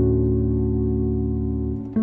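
Sampled piano (Foundations Piano Kontakt instrument) holding a sustained chord with a deep bass underneath, slowly fading, with a new chord struck just before the end.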